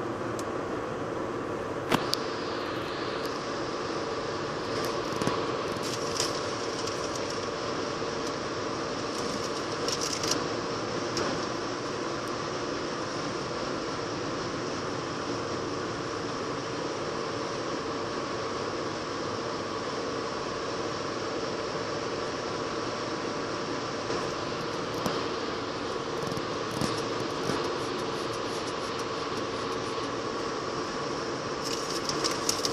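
Steady travelling noise of a car driving alongside a rolling freight train of autorack cars, a constant roar with a steady hum and a few brief sharp clicks.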